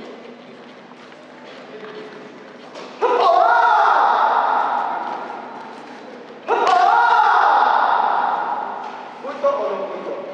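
Two loud shouts, about three and a half seconds apart. Each starts sharply and trails off into the echo of a large hall over a couple of seconds. These are most likely kiai let out with reverse punches (gyaku tsuki) during a karate kumite demonstration.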